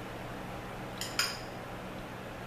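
A spoon clinking twice against a bowl of ice cream about a second in, the second clink louder and ringing briefly, over a faint steady room hum.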